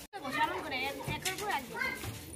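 Girls talking in high young voices: speech only.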